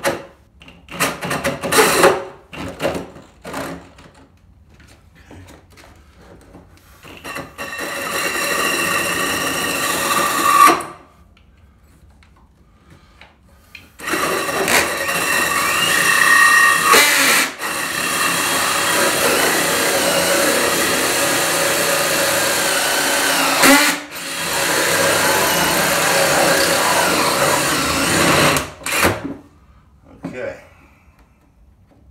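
Power drill turning a three-inch hole saw into a plywood floor: a few short trigger bursts, then a steady cut of about three seconds, a pause, and a long steady cut of about fifteen seconds with two brief breaks, stopping just before the end. It is run slowly so as not to cut through the aluminum under the plywood.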